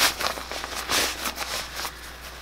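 Cloth rustling and swishing as fabric inserts are pushed down into the pocket of a pocket-style cloth diaper, with a louder swell near the start and another about a second in.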